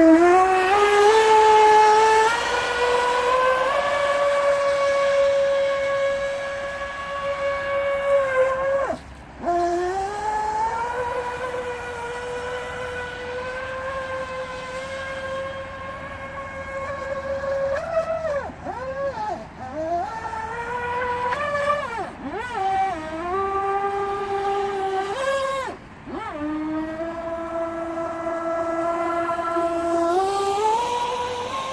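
Radio-controlled jet boat's motor and jet drive running at speed, a high steady whine that climbs in pitch as it accelerates. The pitch drops sharply twice as the throttle is backed off and wavers up and down through the turns.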